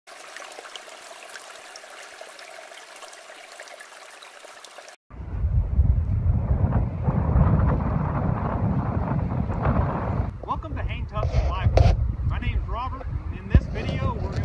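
A mountain stream running with a steady, quiet rush of water. After a sudden cut about five seconds in, loud low wind buffeting on the microphone takes over, and a man's voice starts in it about ten seconds in.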